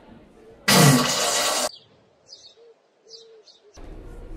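A loud burst of noise lasting about a second, starting near the beginning. After it, a few faint, short chirps of small birds.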